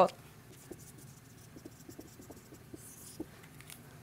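Dry-erase marker writing on a whiteboard: faint, light scratching strokes and small ticks of the tip as words are written.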